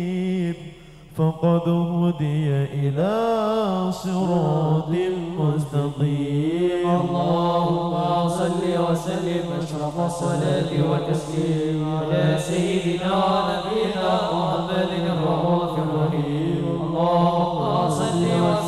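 A group of men singing sholawat, Islamic devotional praise, together into microphones, with a short break in the singing about a second in.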